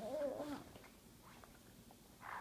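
Baby making a short vocal sound, wavering up and down in pitch, lasting about half a second at the start, then quiet.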